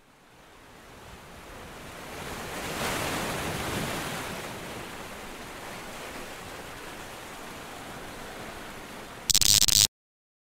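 A steady rushing noise like surf, swelling over the first three seconds and then holding, with a short, much louder burst of static-like noise near the end before the sound cuts off.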